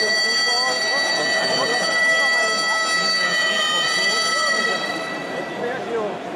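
A horn held as one long, steady note for nearly six seconds, cutting off shortly before the end, over the chatter of a stadium crowd.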